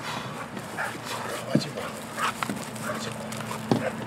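Young Belgian Malinois giving several short, separate barks and yips while straining on its harness line, worked up at the sight of the bite-work decoy.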